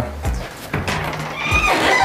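Soft background music, with a high wavering creak near the end as an old wooden panelled door swings open.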